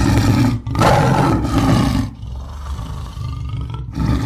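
Tiger roaring: a short loud burst, then a longer one lasting about a second and a half, followed by a quieter low rumble before the roaring picks up again near the end.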